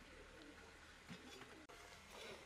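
Faint: a bird calling with a few short, low coos over the quiet sizzle of donuts frying in oil in a wok.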